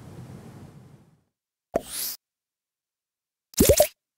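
Two short edited-in sound effects over dead silence. The first is a brief rising swish about two seconds in. The second is a short bloop that falls in pitch near the end. Before them, faint room tone dies away in the first second.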